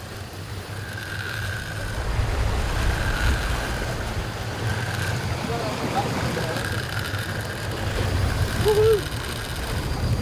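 Shimano Stella spinning reel's drag letting out line in short high whines as a hooked fish pulls, several times. Under it runs the low rumble of the boat's engine, with wind on the microphone.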